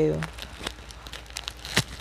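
Small scissors snipping through a thin plastic packet, with the wrapper crinkling in the hands; a sharp snip stands out near the end.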